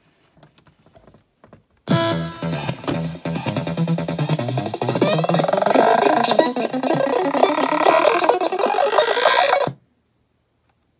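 Circuit-bent Mix Me DJ toy playing its beats, with pitch and speed bent by added potentiometers so the sound sweeps in pitch midway. It starts about two seconds in and cuts off suddenly near the end, because the toy's demo mode limits playback time.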